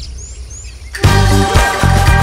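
A break in the music holds several short, high bird chirps over faint outdoor ambience. About a second in, the music comes back loudly with a bass beat.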